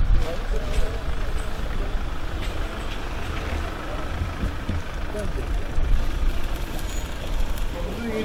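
A dark SUV driving slowly over packed snow, its engine and tyres a low rumble mixed with wind buffeting the microphone. Faint voices come through underneath.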